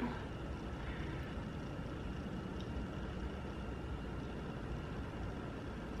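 Steady low background rumble with a faint hiss, unchanging throughout, with no distinct sounds standing out.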